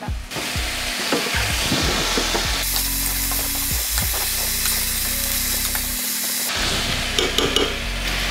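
Brinjal pieces sizzling in hot oil in a stainless-steel kadai as they are stirred with a spoon, which scrapes and clacks against the pan, most often in the first couple of seconds.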